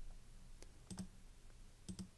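Faint computer mouse button clicks: a few short sharp clicks, two of them close together about a second in, as onscreen buttons are clicked through.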